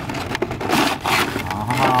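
A cardboard toy box being pulled open and a clear plastic bag sliding and rustling out of it, in a few scraping rustles, loudest about a second in.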